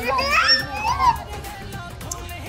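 Children's high voices calling out and chattering over background music.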